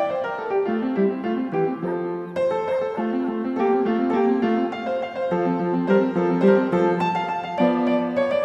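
Background music led by piano, a run of notes changing several times a second.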